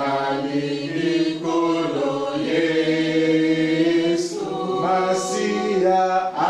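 Church congregation singing together slowly, many voices holding long notes.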